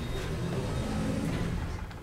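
Low, steady hum and rumble of an elevator car travelling between floors.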